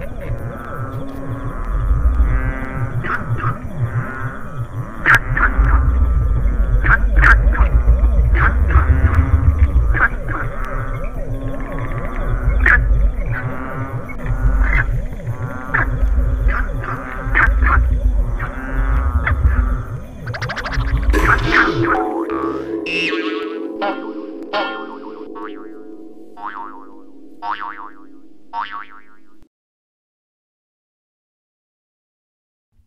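Electronic sci-fi music and sound effects for a time-travel journey: a run of warbling, wobbling tones over a pulsing bass. About 22 seconds in the bass drops away, leaving a held chord with a series of chime-like notes that fade out and stop just before the end.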